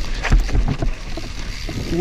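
Mountain bike tyres rolling and skidding fast over loose dirt and stones, with knocks and rattles from the bike, the strongest knock about a third of a second in, under a low rumble of wind on the microphone.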